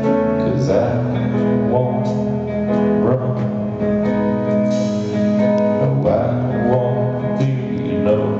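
Live indie rock band playing a slow song: guitars and drums over long sustained chords, heard from the audience.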